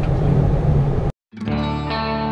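Steady road and engine noise inside a moving car for about a second, cut off suddenly. After a brief gap, soft instrumental music with held notes begins.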